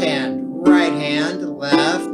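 Lever harp playing blocked root-position triads with alternating hands: two chords plucked about a second apart, each left to ring.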